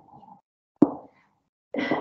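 A single short pop a little under a second in, dying away quickly; speech starts again near the end.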